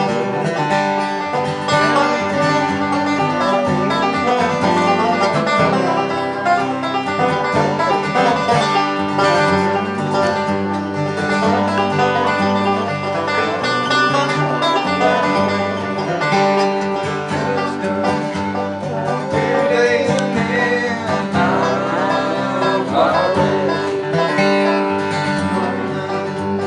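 Acoustic guitar and banjo playing together in a steady, informal bluegrass-style jam.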